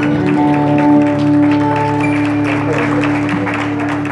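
Cretan string instruments, laouto among them, hold the final note of a kontylies dance tune, with hand-clapping applause building over it in the second half.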